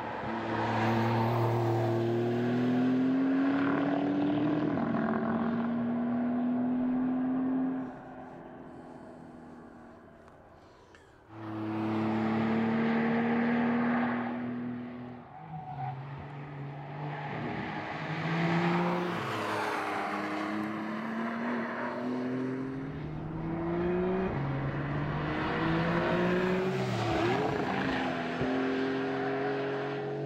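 Turbocharged flat-six engine of a 2020 Porsche 911 Carrera 4S pulling hard, its pitch climbing and then dropping back between rises as it shifts gear. The sound fades away about eight seconds in and cuts back in abruptly near eleven seconds.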